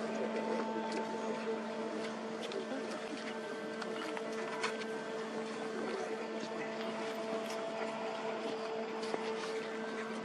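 Swing bridge turning open, its drive machinery giving a steady mechanical hum with a constant pitch.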